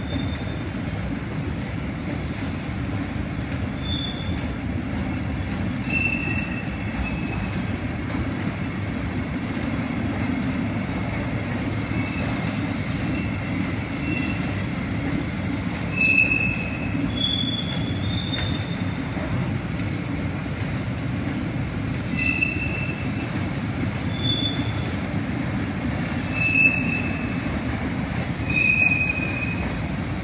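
Intermodal freight train rolling through the station: a continuous low rumble of wheels on rail, broken every couple of seconds by short high-pitched wheel squeals.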